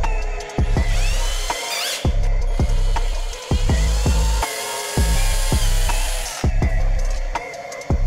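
Electronic background music with a steady kick-drum beat, about two beats a second. Under it, a cordless drill runs as it bores a hole through a plastic case.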